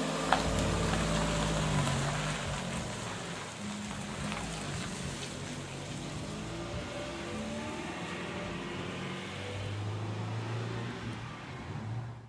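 Fiat 500's engine running as the car pulls away, loudest in the first two seconds, then fading to a quieter steady hum as it moves off.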